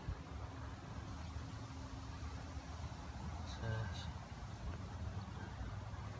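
Wind buffeting the microphone: a steady low rumble. About halfway through there is a brief murmur of a man's voice and a couple of faint high chirps.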